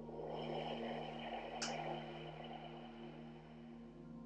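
Ambient meditation music with long sustained drone tones. A rushing noise swells in at the start and fades over the first two to three seconds, with a single sharp click about a second and a half in.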